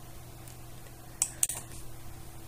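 Two short, sharp clicks about a second in, over a faint steady hum.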